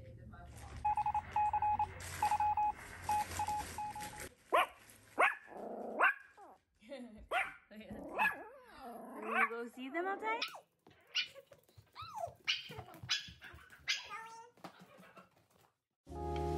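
Small Yorkshire terrier whining in a thin, broken high note, then from about four seconds in giving a string of short yips and barks that sweep up and down in pitch.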